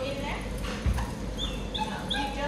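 A young dog whining, short high-pitched cries several times in quick succession in the second half, with a single thump about a second in.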